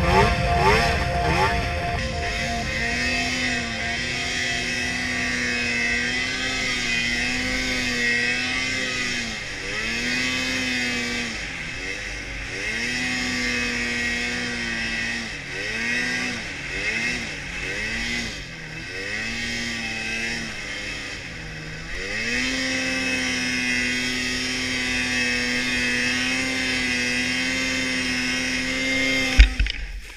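Snowmobile engine heard from the rider's seat, running at high revs that dip and pick back up several times as the sled works through deep powder. There is a sharp thump near the end.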